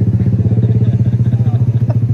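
Motorcycle engine idling close by: a loud, steady low note with a rapid, even pulse.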